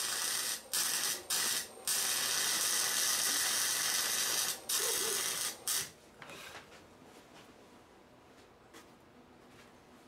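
Small wire-feed welder's arc crackling steadily, cutting out briefly a few times and stopping about six seconds in. The welder is struggling to work in the freezing cold.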